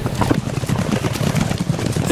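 Irregular footsteps and shuffling of several people moving about and settling into position.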